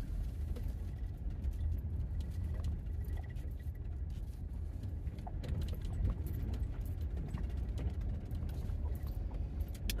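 Minivan driving slowly on a dirt road, heard from inside the cabin: a steady low rumble from the engine and tyres, with small rattles and ticks from the van's interior as it rolls over the uneven surface.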